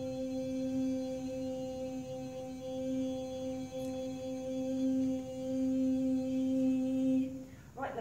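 A woman's voice holding one long, steady sung note as a healing tone aimed at the lower back. It stops shortly before the end.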